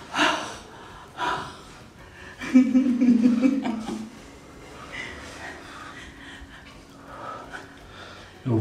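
People breathing out hard and laughing after a strenuous exercise set. A loud drawn-out vocal sound comes about two and a half seconds in and lasts about a second and a half.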